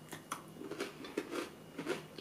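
Two people chewing bites of a milk-chocolate bar with biscuit bits, marshmallows and popping sugar: faint, scattered small crunches and clicks.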